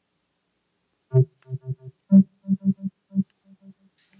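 Kove Commuter 2 Bluetooth speaker sounding its power-on tone: a short electronic tune of about eleven quick notes, starting about a second in and fading on the last few. The tone signals that the speaker has switched on.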